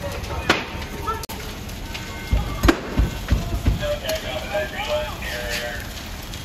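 Apartment structure fire burning, with sharp pops and thumps, a quick run of them from about two to four seconds in.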